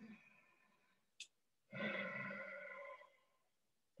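A woman's audible open-throat Ujjayi breath, drawn through the nose with the lips closed: one steady, slightly pitched breath lasting about a second and a half, starting a little before two seconds in. There is a faint click about a second in.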